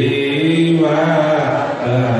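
A man chanting in long, drawn-out melodic notes whose pitch bends slowly, amplified through a handheld microphone.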